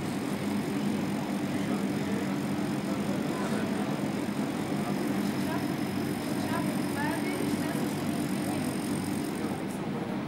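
Steady room ambience of a large hall: a constant low mechanical hum with hiss, and faint distant voices briefly in the middle.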